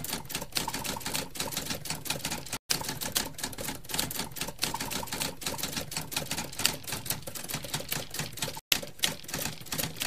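Typewriter keys clacking in quick, irregular succession as a sound effect for on-screen text being typed out. It cuts out briefly twice: about two and a half seconds in, and again near the end.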